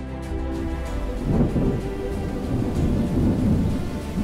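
A deep, rolling thunder rumble breaks in about a second in, loudest at its onset, over fading background music.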